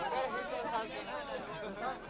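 Several men talking at once, their voices overlapping in a continuous chatter.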